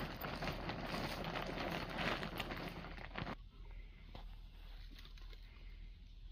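Heavy canvas tarp rustling and crackling as it is pulled back by hand, cutting off sharply about three seconds in.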